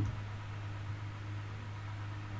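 Steady low hum with a faint even hiss: the recording's background noise, with no other event standing out.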